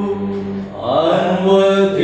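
A voice singing a sustained liturgical chant. It holds long, steady notes, drops off briefly just before the middle, and comes back in with a rising glide into the next held note.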